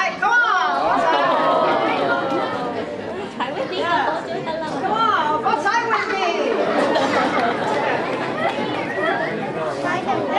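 Audience chatter: many voices talking and calling out over one another at once.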